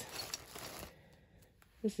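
Thin plastic bag crinkling for about a second as an ornament is pulled out of it.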